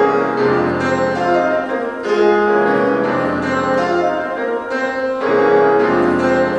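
Grand piano playing slow, sustained chords in an arrangement of a spiritual, with a new chord struck about once a second.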